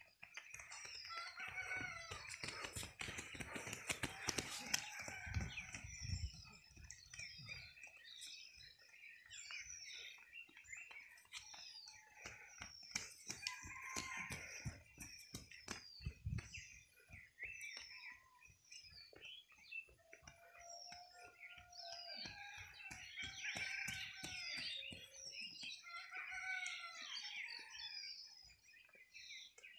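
Birds chirping and twittering, with a rooster crowing, over scattered clicks and a few low bumps.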